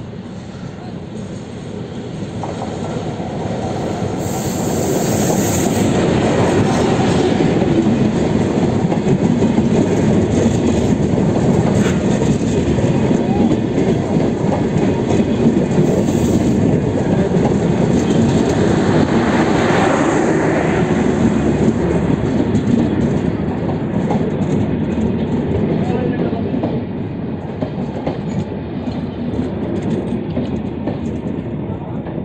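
Neel Sagor Express passenger train rolling along the station track, with wheels clattering over the rail joints and occasional wheel squeal. It grows louder over the first several seconds, then holds steady and eases off a little in the last part.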